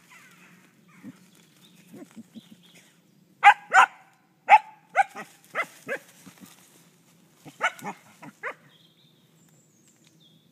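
A dog giving short, high barks in two quick runs, the first about three and a half seconds in and the second a few seconds later, as it plays with a stick in dry leaves.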